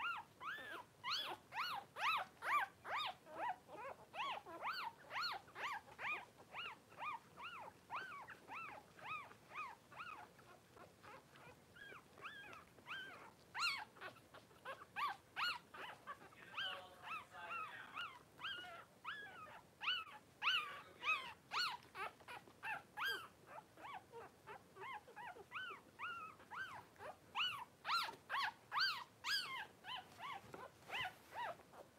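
Newborn Cavalier King Charles spaniel puppies crying: a steady run of short, high squeals, two to three a second, with a brief warbling stretch a little past halfway.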